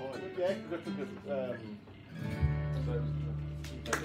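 Live acoustic guitars and bass guitar playing the end of a song: a voice over the guitars, then about halfway through a final chord with a low bass note is struck and rings out, fading away.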